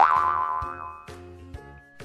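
A cartoon 'boing' sound effect: a springy upward twang at the very start that rings out and fades over about a second, over light background music.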